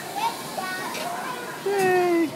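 Children chattering and calling out, with one louder, held call near the end.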